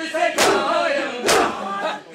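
A crowd of men chanting a Muharram mourning chant (noha) together, with unison chest-beating (matam): two loud hand-on-chest slaps land about a second apart, keeping the rhythm of the chant.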